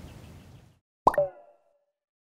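Faint music fading out, then about a second in a short logo sound effect: a quick upward-sweeping pop followed by a brief pitched tone that dies away.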